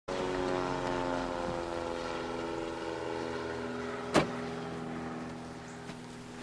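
A motor running with a steady hum whose pitch sinks slowly, with one sharp click about four seconds in.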